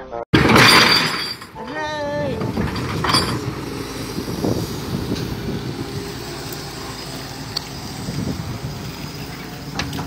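Hitachi EX200 excavator's diesel engine running steadily outdoors. In the first seconds there is a short loud burst of noise, then a brief wavering voice falling in pitch.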